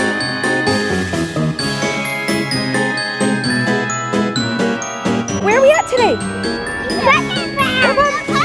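Light, tinkling background music made of a steady run of struck, bell-like notes. A child's high voice cuts in briefly past the middle and again near the end.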